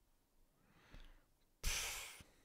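A man breathing close to a microphone: a soft breath about halfway through, then a sudden loud puff of breath near the end that fades over about half a second.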